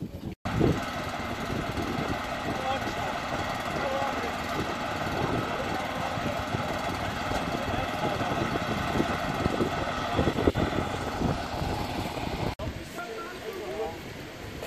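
An engine running steadily, a constant drone that cuts off abruptly near the end.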